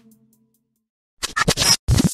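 Channel logo intro sting: after about a second of near silence, a run of choppy, glitchy, scratch-like noise bursts that start and stop abruptly.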